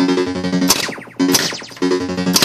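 Williams Sorcerer pinball machine's electronic game sounds from its speaker: repeated sharp hits, each followed by a falling sweep, over a steady low tone that drops out between them.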